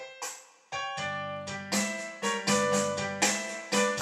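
Boogie-woogie played with a piano sound: a few light notes, then from about a second in a steady bass line under chords struck two or three times a second.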